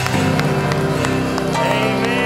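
Live worship band music: sustained chords from acoustic guitar and band with regular sharp hand claps or drum hits, and a singing voice rising near the end.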